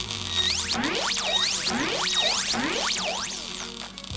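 Cartoon electric-zap sound effect: a quick run of rising synthesized sweeps, about three a second, over a steady low hum, as electric current is fed into a bus engine.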